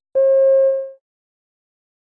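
A single electronic beep, one steady mid-pitched tone lasting under a second and fading out at the end: the signal tone in a recorded listening test that marks the move to the next question.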